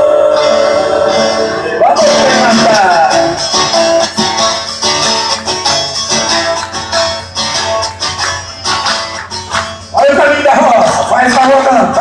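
Live sertaneja music played over a PA: male voices singing over an amplified acoustic guitar. A held sung note gives way to a quieter guitar passage in the middle, and the singing comes back loud about ten seconds in.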